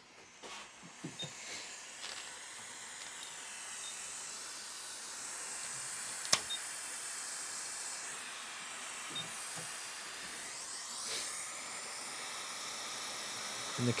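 Hot air rework station blowing a steady hiss of air onto a small capacitor on a laptop logic board, heating its solder so the part can be removed. A single sharp click comes about six seconds in.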